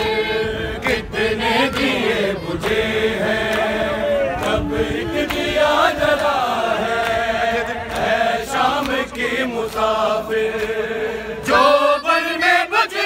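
A group of men chanting a noha, an Urdu Shia lament, in unison with long wavering sung lines, punctuated by sharp slaps of hands on bare chests (matam).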